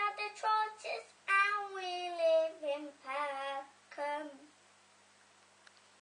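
A young girl singing unaccompanied: a few short notes, then a long phrase falling in pitch, stopping about four and a half seconds in.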